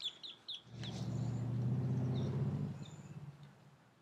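Birds chirping in short high calls, with a low steady hum that swells about a second in and fades away after a few seconds.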